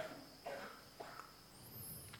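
Faint, steady, high-pitched insect trill, with a brief high chirp near the end.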